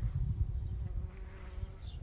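Bees buzzing around squash plants and their blossoms, a steady hum over a low rumble.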